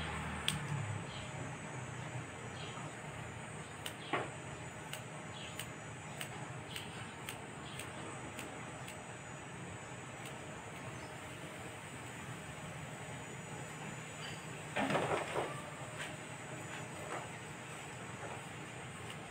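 Scissors snipping hair: a run of faint, crisp snips about two a second through the first half, over a steady low background hiss. A brief louder rustle comes about fifteen seconds in.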